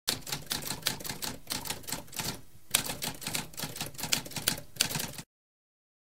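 Typewriter keys clacking in a fast, irregular run of strikes, with a brief pause a little before halfway, cutting off abruptly about a second before the end.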